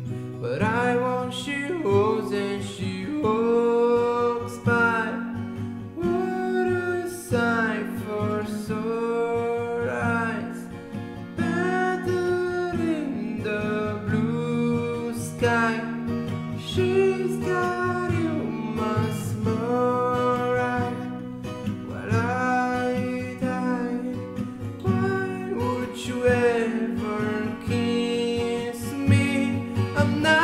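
A man singing in phrases a few seconds long, accompanying himself on a cutaway acoustic guitar played in a steady pattern.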